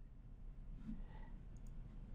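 Quiet room tone with a faint computer mouse click about one and a half seconds in.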